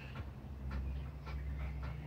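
Quiet outdoor background: a steady low hum with faint, short bird chirps scattered through it.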